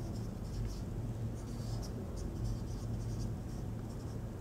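Felt-tip marker writing on a whiteboard, a series of short scratchy strokes as an equation is written out, over a faint steady low hum.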